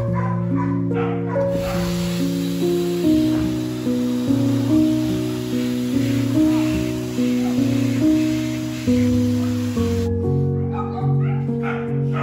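A hose-fed blower dryer blowing air in a steady rush, switched on about a second and a half in and cut off suddenly about ten seconds in, over background music with sustained notes.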